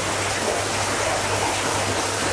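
Steady rush of hot-spring water flowing into an open-air rock bath, with a low even hum underneath.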